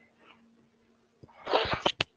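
A person sneezing once near the end: a short, sharp, noisy burst after a near-silent first second.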